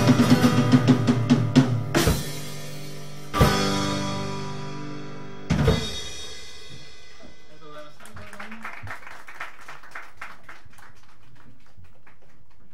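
Live band with drum kit, acoustic guitar and keyboard finishing a song: a rapid drum fill, then three single full-band hits with cymbals at about two, three and a half and five and a half seconds, each left to ring and fade. After about six seconds the music has stopped and only faint scattered clicks remain.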